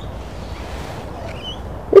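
Steady low rumble of wind on the microphone, with faint rustling, and a short high chirp about one and a half seconds in.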